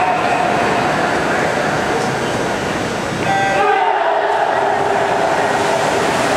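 Natatorium crowd noise, then about three seconds in a short electronic starting horn sounds for a swimming race start, followed at once by louder crowd cheering.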